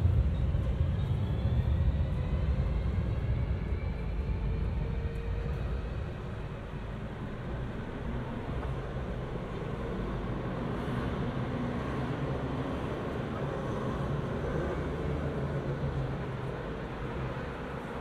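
Street traffic ambience: a vehicle's low rumble is loudest at the start and fades over the first few seconds, then a steady hum of traffic carries on.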